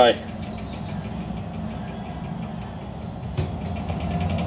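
Steady low drone of a running engine or motor-driven machine, with a single sharp click about three and a half seconds in.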